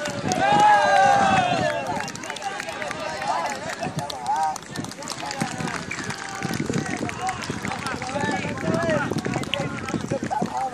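Group of rugby players shouting and cheering together in a team huddle, several voices overlapping, loudest in the first two seconds, with scattered short knocks throughout.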